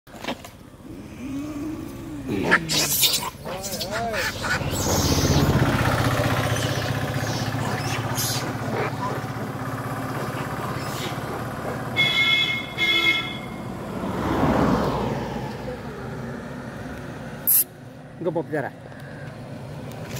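Outdoor mix of people's voices over a vehicle engine running nearby, with two short horn toots about twelve seconds in.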